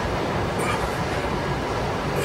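Steady rumbling background noise of a gym, with a faint brief hiss about half a second in.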